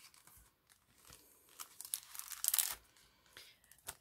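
Card and paper rustling and scraping as glitter-edged card tags are slid out of a paper pocket, with small clicks; faint at first, loudest around the middle.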